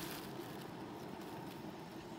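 Quiet, steady background noise with no distinct events.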